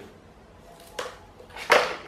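A fan's power cord being handled and pulled up from the plastic stand: a small click about halfway through, then a brief rustling swish near the end.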